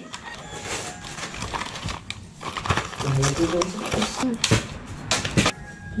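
Cardboard box of BMX parts being opened and handled: irregular clicks, taps and rustles of the packaging, with a brief low voice about halfway through.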